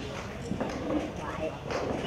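A person's voice talking, with a few short, light knocks in between.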